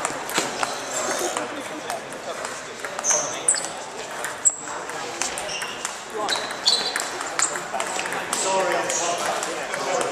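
Table tennis ball clicking off bats and table in rallies: sharp, irregular ticks, several a second at times, over a steady murmur of voices in a large hall.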